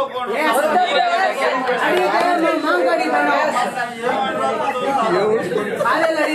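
Several people talking at once: lively, overlapping chatter.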